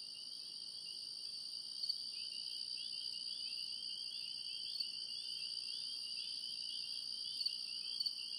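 A chorus of crickets chirping steadily, a night-time soundscape played as the act's opening, fading up as it begins. A few faint ticks sit over it.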